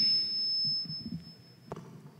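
Public-address microphone feedback: a thin, steady, high-pitched whine over the fading reverberation of the hall. It stops with a small click about three-quarters of the way in. The ring comes from the questioner standing too close to the microphone.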